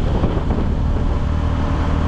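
Motorcycle riding along at a steady speed: a steady low engine hum with wind and road noise rushing over the microphone.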